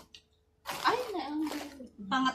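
A woman's voice: one short drawn-out vocal sound whose pitch rises and then falls, starting about half a second in after a brief quiet.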